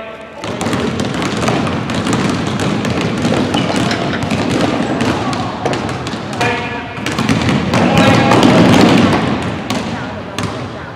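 Many basketballs bounced at once on a hardwood gym floor, a dense run of overlapping bounces in the echoing hall, growing loudest near the end, with children's voices calling out over it.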